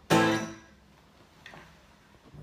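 A single strummed chord on an acoustic guitar about a tenth of a second in, ringing out and fading within about a second: the song's closing chord. A faint click follows.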